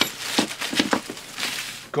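Clear plastic bag crinkling and rustling as it is handled and pulled open.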